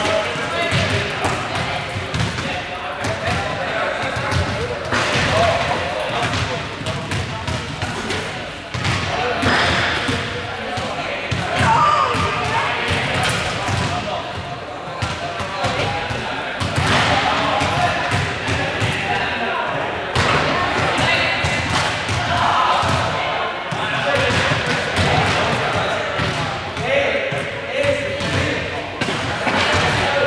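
Balls bouncing and thudding on a sports-hall floor, again and again, amid the shouts and chatter of many players, all echoing in the large hall.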